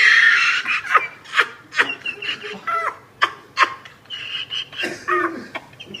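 People laughing hard in a string of short, breathy bursts, opening with a loud shriek of laughter.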